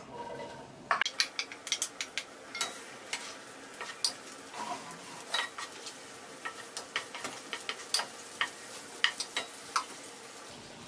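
Sliced onions sizzling in hot oil in a nonstick wok as they are sautéed, while a wooden spatula stirs them, knocking and scraping against the pan in quick, irregular clicks that start about a second in.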